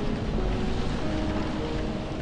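Steady rain falling, with a slow piano melody over it: single notes held one after another.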